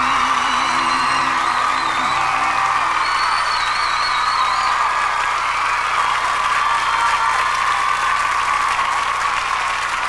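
The song's final held note and chord end about three seconds in, overlapping a studio audience applauding and cheering, with a high wavering cheer a few seconds in.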